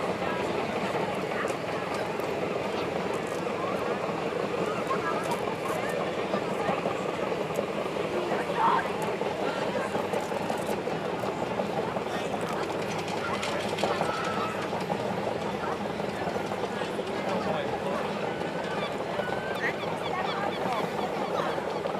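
Engine of a tracked beach tractor running steadily as it tows a lifeboat on its carriage up the beach, with the chatter of onlookers over it.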